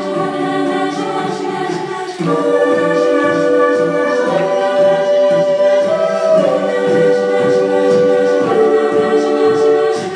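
Jazz choir singing a cappella into handheld microphones, in close harmony. About two seconds in, the singing gets louder and one strong voice holds long notes over the group's chords, stepping up and then back down.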